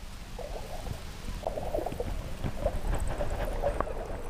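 Muffled underwater sound in a swimming pool: a low rumble of moving water with gurgling and faint, short, muffled tones.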